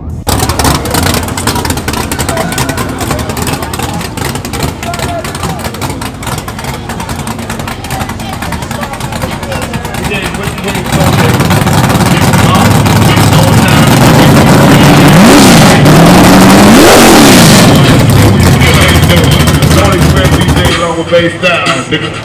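A Chevrolet Malibu's engine revving amid crowd chatter: about halfway in the engine gets much louder, then revs up and back down twice in quick succession before the sound drops off near the end.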